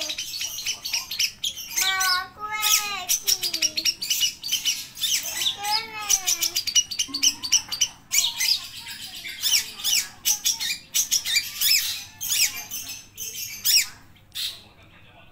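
Long-tailed shrike (cendet) singing in full voice: a fast, busy stream of high chirps, trills and mimicked calls. A few lower, wavering calls break in around two and six seconds in.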